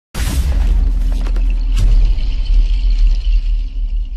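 Synthesized intro sting: a deep, continuous rumbling bass boom, opened by a bright noisy whoosh, with a few sharp glitch clicks about a second and a half in and a thin high shimmer above.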